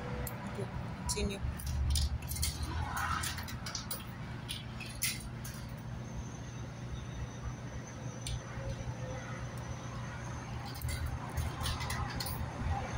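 Coins clinking as they are fed into a vending machine's coin slot: a run of sharp clicks and jingles, thinning out in the middle, with a few more near the end.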